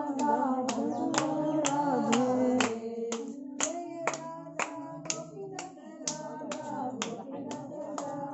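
Hand-clapping keeping time for a kirtan chant, a steady beat of about two claps a second. Voices singing the chant melody are louder in the first three seconds and fainter after that.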